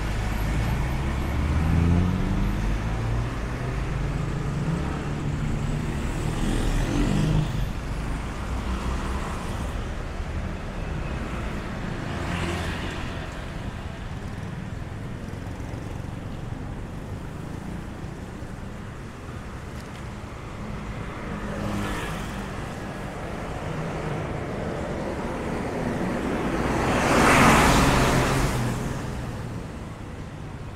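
City street traffic: motor vehicles passing close by. An engine's pitch rises and falls through the first several seconds, and the loudest pass builds and fades near the end.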